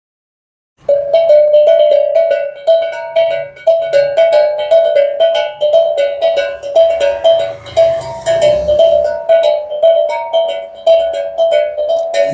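A small tuned percussion instrument played with the hands: quick strokes alternating mostly between two ringing, bell-like notes, with an occasional higher note. It starts just under a second in.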